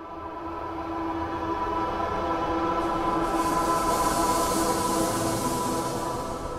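Logo-intro sound effect: a sustained drone with two steady held tones over a rumble. It swells in at the start, and a high hiss joins about three seconds in.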